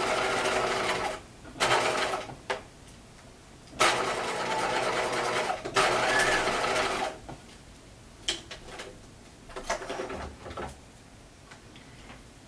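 Bernina electric sewing machine stitching a waistband seam through denim, running in four bursts with short pauses between them, the longest about two seconds. After that come only a few light clicks of handling.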